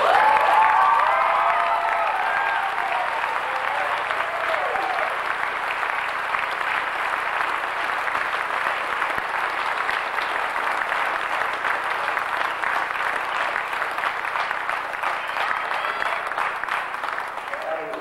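Audience applauding steadily in a hall, with voices calling out over the clapping for the first few seconds. The applause stops abruptly at the end.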